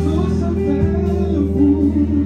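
Live gospel band playing without vocals: electric guitar lines over sustained chords and a steady held bass note.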